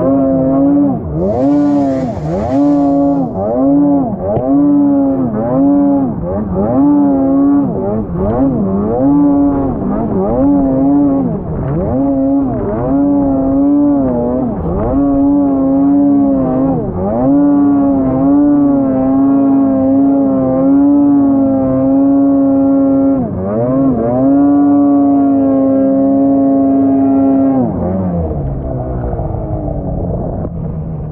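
Ski-Doo snowmobile's two-stroke engine revving up and down in quick throttle pulses, a little faster than one a second, as the sled works through deep snow. Later it holds steady high revs in longer pulls, then falls off near the end.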